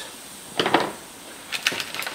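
Tire plug kit tools being handled on a truck's rear bumper: one hard knock about half a second in, then a few quick light clicks near the end.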